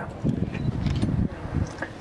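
Wind buffeting the microphone: an uneven low rumble with faint hiss.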